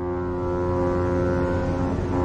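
A deep, sustained tone over a low rumble, swelling up out of silence and then holding steady.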